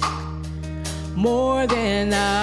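A woman singing a worship song into a handheld microphone, with a quieter phrase at first and then one long held note that wavers slightly from a little past halfway, over steady sustained instrumental backing.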